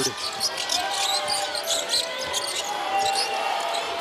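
Live basketball game sound: the ball dribbling and sneakers squeaking on the hardwood court over steady crowd noise.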